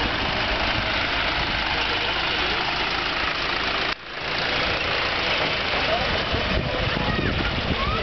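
John Deere 2030 tractor engine running steadily as the tractor drives past close by, with a short break about halfway through.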